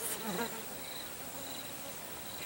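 Insects buzzing and chirping steadily in the background, with a faint high pulsing note that comes and goes.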